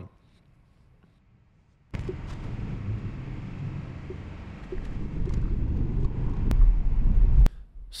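Cabin road noise of a Tesla electric car driving: a steady low rumble of tyres and wind with no engine note. It starts after about two seconds of near silence, swells louder near the end, then cuts off abruptly.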